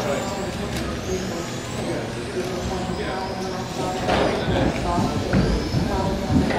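Electric RC touring cars racing on an indoor track, their motors whining and rising and falling in pitch as they speed up and slow down, with voices in the background.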